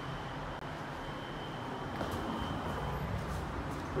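Elevator car running in its hoistway: a steady low rumble with a thin high whine that fades out about two and a half seconds in. A few light clicks follow as the car stops and the doors open.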